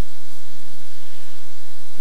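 Steady electrical hum with hiss: the background noise of the recording, with no speech.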